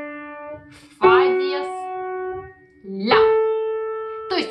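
Piano playing single notes slowly, one at a time and rising: a D left ringing, then F-sharp struck about a second in and A about three seconds in, each note fading away as it rings.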